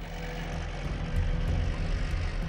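Tracked bulldozer's diesel engine running with a steady low rumble as its blade pushes through and flattens jungle vegetation.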